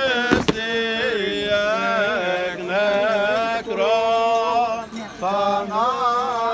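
Male Greek Orthodox Byzantine chant: a winding, ornamented melody sung over a steady held drone note. A single sharp knock sounds about half a second in.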